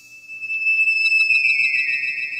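Electronic music: a single high, pure synthesizer tone comes in about half a second in, holds steady, then slides downward in pitch in the second half.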